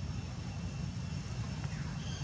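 Steady low outdoor background rumble with no distinct event, like wind on the microphone or distant traffic.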